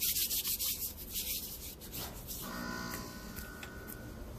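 Fingers rubbing and pressing into packed powdered cleanser in a glass bowl: a fine, gritty, scratchy rustle, strongest in the first second and a half and then fading. From about halfway a faint steady hum with several tones comes in underneath.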